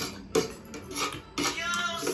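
Metal forks clicking and scraping against plates as several people eat, with a few sharp clinks.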